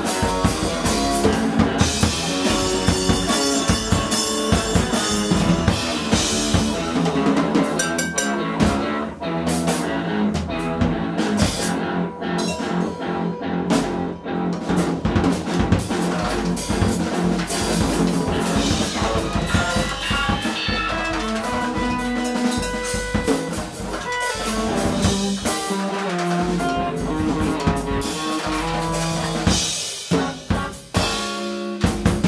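Electric guitar through an amplifier and a drum kit playing an improvised free-jazz style duo, with dense shifting guitar lines over busy drumming and bass drum and rimshot strokes throughout.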